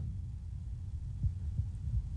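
Low steady hum of the voice recording's background noise, with a few faint soft thumps.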